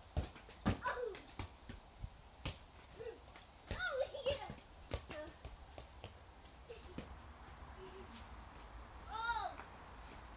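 Children's voices in short calls and squeals, some rising and falling in pitch, with several sharp knocks scattered between them.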